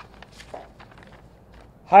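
Sheets of printed paper rustling as they are handled and turned, a few soft short rustles, before a man's voice starts near the end.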